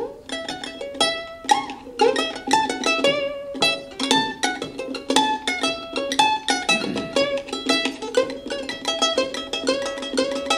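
Solo ukulele playing an instrumental passage: a quick run of plucked notes and chords with no singing.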